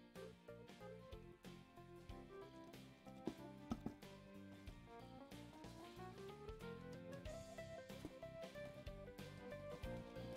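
Faint background music with a slowly climbing melody. A few soft knocks come about three to four seconds in.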